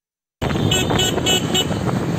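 Street traffic noise cutting in abruptly, with a vehicle horn tooting four times in quick succession.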